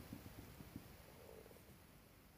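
Near silence: faint low room rumble with a few small soft ticks.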